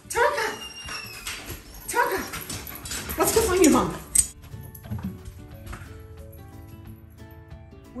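A dog vocalizing in two loud bouts of wavering, whining howls during the first four seconds. After that, soft background music with held notes takes over.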